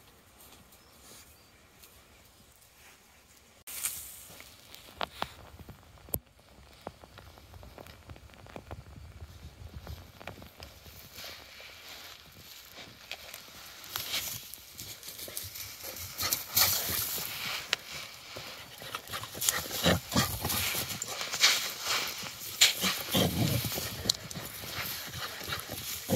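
Quick galloping footfalls and thuds, starting about four seconds in after near silence and getting busier and louder toward the end.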